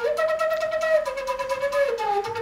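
Solo flute playing a slow line of long held notes. The pitch steps up just after the start, dips slightly about halfway, and drops back down near the end.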